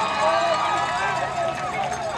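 Several voices calling and talking at once on a football field, over a steady hum.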